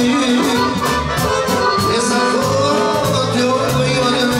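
Live folk band music: a Dallapé piano accordion playing the melody over a steady drum-kit beat and keyboard.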